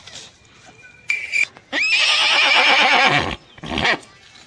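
A horse neighing: a short call about a second in, then a long whinny that slides sharply up and then wavers, and a brief final burst near the end. It is laid over the picture as a comedy sound effect, since no horse is on screen.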